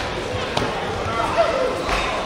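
Indistinct voices calling out in a large hall, with a couple of dull thuds from the fighters' feet and kicks on the taekwondo mat, the heaviest near the end.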